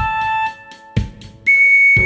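Recorder playing a slow pop melody over a backing track, with a kick drum about once a second. It holds a note, stops for about a second, then comes in on a long high note about a second and a half in.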